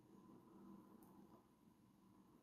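Near silence: room tone, with only a very faint rustle about half a second in.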